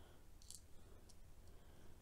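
Near silence with two faint light clicks, about half a second and about a second in: tiny metal three-link coupling chain links and fine-nosed pliers being handled and set down on card.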